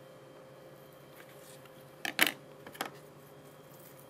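A quick cluster of sharp clicks about two seconds in and a smaller pair just under a second later: a kitchen knife and a metal coring tube handled against a plastic tray, over a faint steady room hum.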